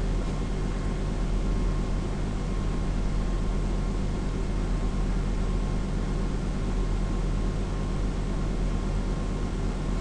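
Steady background hiss with a low electrical hum and no distinct events: the recording's room and microphone noise.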